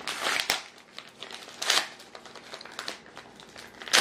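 Paper mail and envelopes being handled: rustling and crinkling in a few short bursts, the sharpest at the very end.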